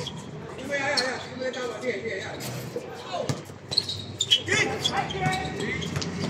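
Basketball bouncing on a hard court during play, a string of sharp impacts, with players shouting to each other over it.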